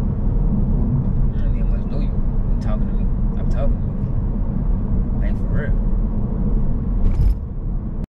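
Steady low rumble of road and engine noise heard inside the cabin of a moving car, with a few brief voice sounds or mouth noises scattered over it.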